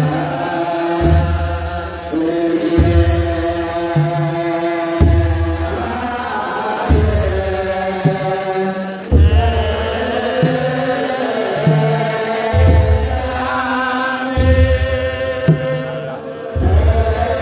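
Ethiopian Orthodox wereb: a group of male clergy chanting in unison, holding long notes that step up and down. Deep thuds beat under the chant about every two seconds.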